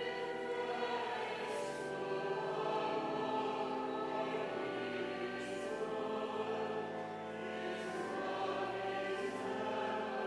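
Choir singing a slow piece in long held chords that shift from note to note, with soft consonants of the words now and then.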